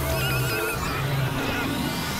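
Experimental electronic synthesizer music: low steady drones under wavering, warbling high tones and a noisy texture.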